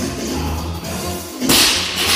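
A loaded 95-pound barbell dropped onto the gym floor about three-quarters of the way in: a single loud crash of the plates landing, over steady background music.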